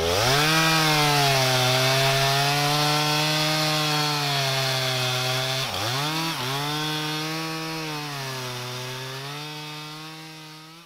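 Chainsaw engine revving up sharply and running at high speed. Its pitch dips briefly twice about six seconds in, and the sound slowly fades away toward the end.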